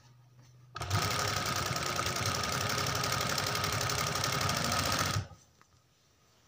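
Electric sewing machine stitching through fabric layered with stiff buckram interlining: it starts about a second in, runs fast and steady for about four seconds, then stops abruptly.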